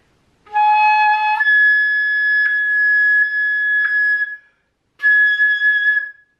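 Concert flute playing a note that is slurred up an octave to the high third-octave G♯ and held for about three seconds. After a short break the high G♯ is started again near the end. It is played with the right-hand third and fourth fingers covering, an auxiliary fingering meant to help this hard note speak and sit more steadily.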